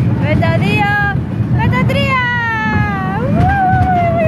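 A woman's voice in long, gliding, high-pitched calls, held notes that slide down and swoop up, over a steady low rumble.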